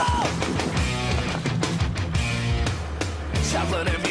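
Rock music with guitar, bass and a steady drum beat, an instrumental stretch without singing.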